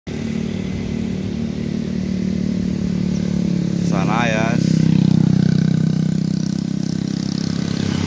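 Motorcycle engine running on the road, growing louder to a peak about five seconds in and then easing off as it passes. A short wavering call, like a voice, is heard briefly about four seconds in.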